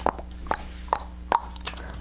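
Pages of a patterned-paper pad being flipped one after another, each sheet flapping down with a short crisp click, a little over two a second.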